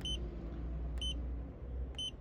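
Three short, high electronic beeps about a second apart as the Auto A/C key on a touch-screen climate control is pressed, over a low steady hum.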